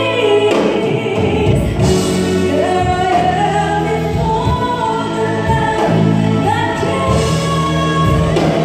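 A woman singing a Christian prayer song through a microphone and PA, holding long notes that slide up into them, over a live band with electric bass.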